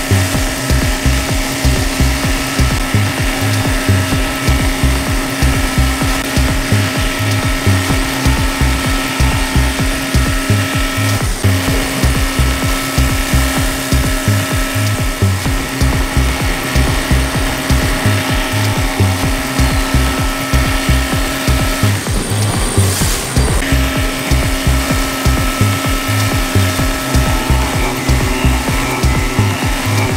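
Nine9 NC Helix Drill, an indexable helical-interpolation cutter, milling S50C carbon steel on a CNC machine: a steady cutting whine made of several held tones, with a low pulsing about two to three times a second. The tones break off briefly about 22 seconds in, then resume.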